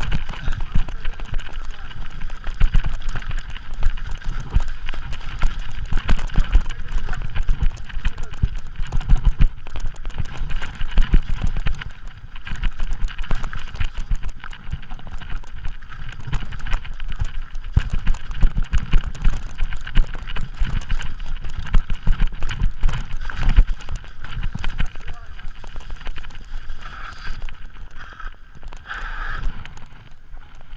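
Mountain bike clattering and rattling over a rough, rocky trail on a fast descent: dense, irregular jolts and knocks from the frame, chain and suspension, with a steady higher hum underneath. The clatter quietens right at the end as the bike rolls onto smooth pavement.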